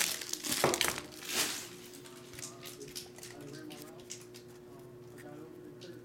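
A stack of trading cards gathered up off a table and handled: a few loud rustles in the first second and a half, then soft, quick clicks as the cards are thumbed through.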